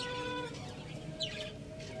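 The long held final note of a rooster's crow, ending about half a second in. A short, high, falling bird chirp follows a little past the middle.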